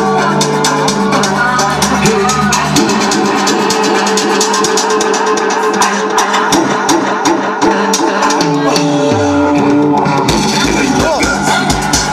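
Loud DJ mix of dance music with a steady beat, played from CD decks through a mixer. The bass drops out about three seconds in, a falling low sweep follows, and the bass comes back about ten seconds in.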